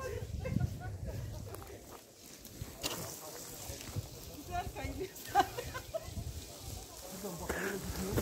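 Group of hikers' voices at a distance, mixed with scattered footsteps and scuffs on a dry, steep forest slope; one sharp knock about five seconds in.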